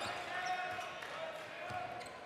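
Steady crowd murmur in a basketball arena during live play, with a basketball bouncing on the hardwood court.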